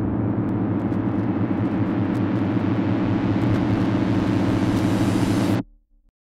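A steady, loud, low droning rumble with a fast flutter. It grows a little louder and brighter, then cuts off suddenly near the end.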